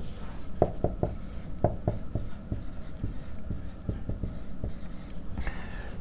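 Dry-erase marker writing on a whiteboard: a run of short taps and scratchy strokes as letters are written.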